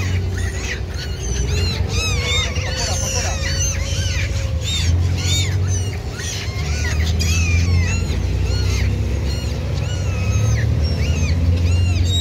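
A flock of gulls calling over and over, many short rising-and-falling squawks overlapping one another, over a steady low rumble.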